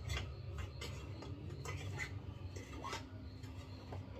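Metal utensil clinking and scraping against a stainless steel cooking pot, a handful of separate clinks, over a steady low hum.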